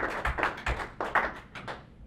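A small audience clapping at the end of a talk. The claps thin out and stop near the end.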